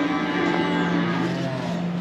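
Steady hum of barn equipment made of several held tones, with a faint low call from the heifers near the end.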